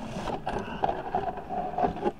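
Rustling and bumping handling noise as a phone is swung about and brushes against a straw cowboy hat, starting with a short hiss.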